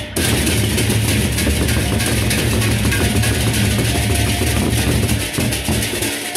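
Sasak gendang beleq ensemble playing: dense, continuous clashing of paired hand cymbals over the deep beat of large drums. The low drum sound thins out near the end.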